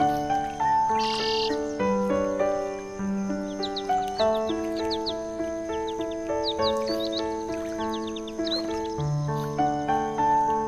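Instrumental background music of held notes stepping from one pitch to the next, with short bird-like chirps heard over it, most often in the middle stretch.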